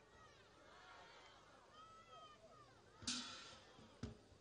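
Near silence in a pause of a man's microphone speech, with faint distant voices and a brief hiss about three seconds in.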